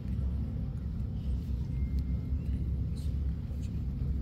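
A low, steady rumble with a few faint clicks and rustles scattered through it.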